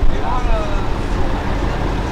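Outdoor crowd ambience: a steady noisy rumble with a faint voice heard briefly about half a second in.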